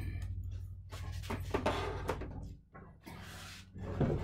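Handling noise as a wooden-framed box fan and filter box is set down and shifted on a workbench: soft knocks and scraping, over a steady low hum.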